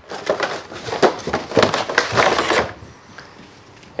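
Cardboard filter box being opened and a new panel air filter slid out of it: irregular crinkling and scraping of cardboard that lasts about two and a half seconds.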